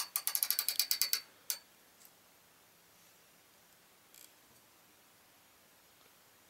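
Socket ratchet wrench clicking quickly, about a dozen clicks a second, as it runs a nut down a carriage bolt; the run lasts about a second, with one more click shortly after.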